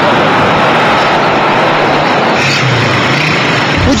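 Heavy city road traffic: a steady, loud wash of car and motorcycle engine and tyre noise, with one engine's low hum standing out briefly past the middle.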